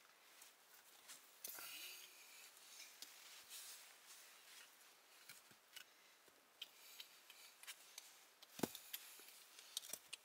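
Faint scraping and small knocks as a large stone is shifted by hand against other rocks and a wooden plank wall, with one clearer knock near the end.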